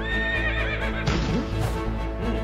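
A horse whinnying over theme music: one high, wavering call lasting about a second that falls in pitch at its end, followed by a short rush of noise.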